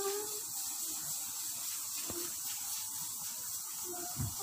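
Steady low hiss of background noise with no distinct event, a short faint tone about two seconds in.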